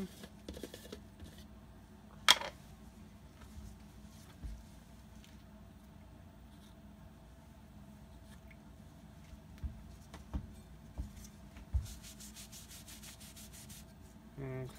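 A cloth rag rubbing and wiping steel cover plates clean with acetone, faint and intermittent, with a quick run of light strokes near the end. A single sharp click about two seconds in is the loudest sound, and there are a few soft knocks toward the end.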